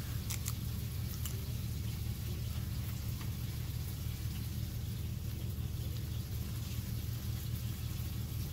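Pizza-flavoured Pringles potato crisp being bitten and chewed, with a few sharp crunches in the first second or so, over a steady low hum.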